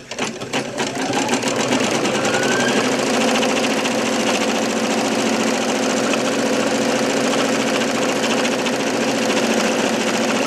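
Brother computerized embroidery machine starting to stitch. A few separate needle strokes come first. Then the motor speeds up with a rising whine over the first couple of seconds and settles into a steady, rapid needle rhythm.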